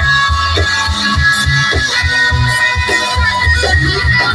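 Live band music played through PA speakers, heard from within the audience: a rhythmic bass line under held melody notes.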